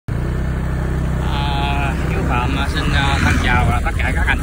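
Motor scooter engine running steadily while riding along. A voice begins talking over it about a second and a half in.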